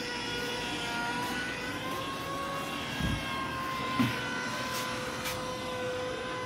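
A distant engine's steady drone, several faint tones wavering slightly in pitch, with a low thump about three seconds in.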